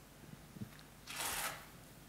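A brief rustling hiss, about half a second long, about a second in, over a quiet room, with a few faint knocks before it.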